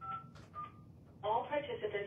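Two short phone keypad touch-tone beeps, then a voice over the telephone line coming through the phone's speaker, sounding thin and narrow, from about a second in.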